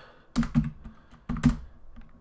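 Keystrokes on a computer keyboard: a command being typed in two quick clusters of sharp clicks about a second apart, the loudest click in the second cluster.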